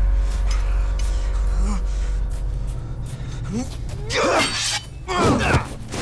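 Dramatic film score with a deep low drone and held tones, over which men grunt and cry out with strain in a fight, loudest about four and five seconds in, with sharp hits scattered through.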